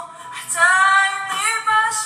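Music with a high woman's voice singing long held, wavering notes in two phrases, fading out just as it ends.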